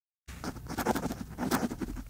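Dry scratching on paper, like a pen writing, in quick uneven strokes that start a moment in and stop abruptly.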